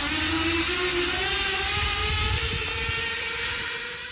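Zipline trolley running along a steel cable: a loud whirring hiss with a tone that rises in pitch during the first second as the rider picks up speed, then holds steady.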